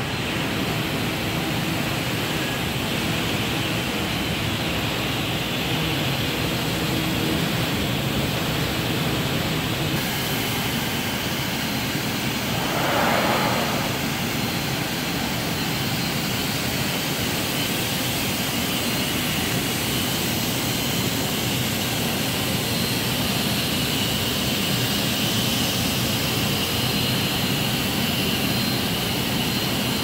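HP Scitex 15500 industrial digital printer for corrugated board running in production: a loud, steady machine noise, with a brief hiss lasting about a second near the middle.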